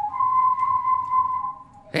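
Steady whistled tone serving as the sound effect for switching the radio station: the pitch steps up at the start, holds for about a second and a half, then fades.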